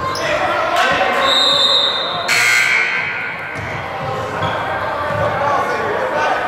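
Basketball being bounced on a hardwood gym floor amid crowd chatter in a large echoing hall. Partway through, a steady high tone lasts about a second and is followed at once by a short, loud burst of noise.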